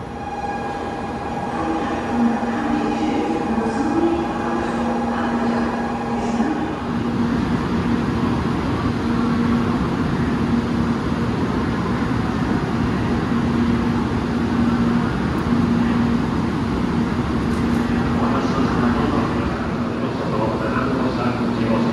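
700 series Rail Star Shinkansen train standing at the platform with its onboard equipment running: a steady hum and rumble with a constant low tone, and a higher steady whine that cuts off about six seconds in.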